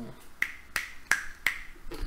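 Fingers snapping four times in an even rhythm, about three snaps a second.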